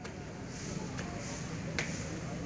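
A few sharp shoe taps on a hard court, about a second apart, from a person marching forward, over a faint murmur of a large assembled crowd.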